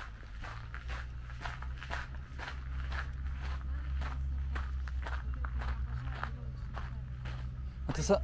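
Footsteps crunching on a packed gravel road, an even walking pace of about two steps a second, over a steady low rumble.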